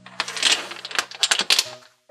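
Domino tiles clacking and sliding against one another and the tabletop as they are picked from a loose pile, with a quick run of sharp clicks about a second in.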